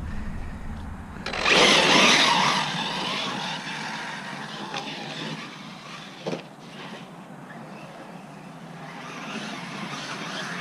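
Arrma Talion 6S brushless electric RC truck taking off at full throttle about a second in, its motor and tyres on grass and dirt loud at first, then fading as it drives away.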